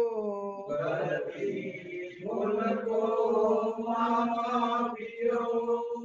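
A devotional prayer chanted in a slow, sung melody, with drawn-out notes broken by brief breaths between phrases.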